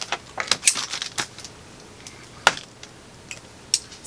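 Scattered sharp clicks and taps, about half a dozen, from small pocket knives and objects being handled at a table, the loudest about two and a half seconds in.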